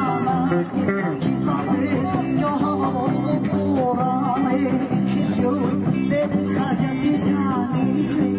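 Band music with guitar: sustained low chords under a melody line that slides and wavers in pitch, playing without a break.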